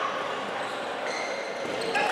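Live sound of an indoor handball match: a steady, echoing din of the sports hall, with thin high squeaks starting about halfway through and again near the end.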